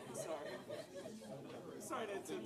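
Indistinct chatter: several people talking among themselves, with no one voice clear.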